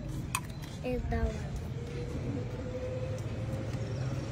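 A metal spoon clicks once against a food tray, followed by brief murmured voice sounds, then a faint steady hum with a slight rise over a low background rumble.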